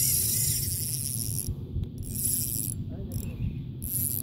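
Spinning reel being cranked to retrieve a lure, its gears giving a high whir. The whir runs steadily for about a second and a half, then comes in short stop-start spurts as the cranking pauses and resumes.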